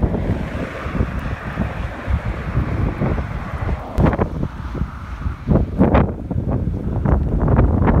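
Wind buffeting the phone microphone, a heavy, uneven low rumble. A band of hiss sits over it in the first half, and several sharp knocks come from about four seconds in.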